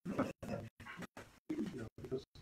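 A person speaking, the voice garbled and broken up by repeated brief dropouts to dead silence several times a second.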